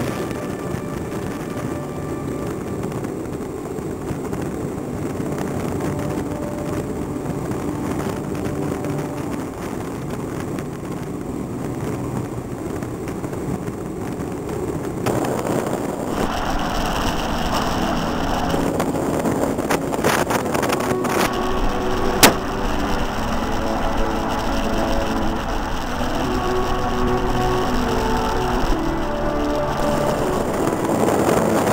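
Steady rush of wind and road noise from an engineless soapbox gravity racer rolling fast downhill. About halfway through the sound turns brighter and a little louder, and there is a single sharp click a little past two-thirds of the way in.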